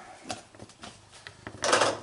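Scattered light clicks and taps of things being handled on a kitchen counter as cat food is set out, then a louder noisy clatter shortly before the end.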